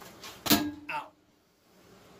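A sharp knock about half a second in, leaving a short ringing tone, followed by a brief pitched sound; then the sound drops almost to silence.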